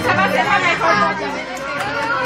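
Several people talking at once, overlapping voices in conversational chatter.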